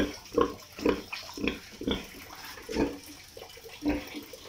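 Sow giving short, repeated grunts, about two a second.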